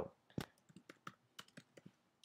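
Faint keystrokes on a computer keyboard: a scattered run of light clicks as a short line of code is typed, the loudest about half a second in.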